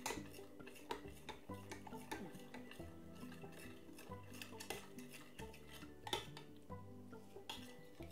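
A metal spoon stirring liquid in a glass measuring jug, clinking irregularly against the glass as cornflour is mixed into coconut milk. Faint background music with sustained notes plays underneath.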